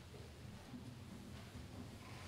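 Faint room tone: a low, steady rumble and hiss with no distinct sounds.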